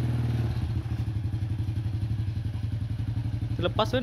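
Honda Supra Fit's small single-cylinder four-stroke motorcycle engine running at low revs, its note dropping and turning more uneven about half a second in.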